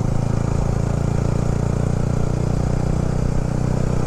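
Sport motorcycle's engine running at a steady cruise while riding, a constant low drone with an even rush of wind and road noise.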